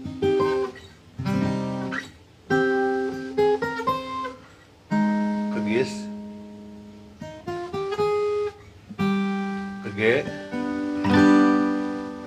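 Acoustic guitar playing an intro chord progression, from C minor through G-sharp major to G major. Chords are struck and left to ring, with short picked runs of single notes between them.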